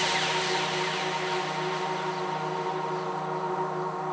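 Dubstep track's outro: a synthesizer drone of several steady held tones, with a hissing noise wash that fades away over the first couple of seconds.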